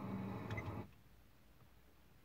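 A faint low hum with a click about half a second in, cutting off just under a second in; then near silence, room tone only.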